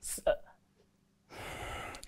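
A man's audible in-breath, an airy hiss of about 0.7 s taken near the end before he speaks again. It follows a brief mouth sound at the start and a moment of quiet.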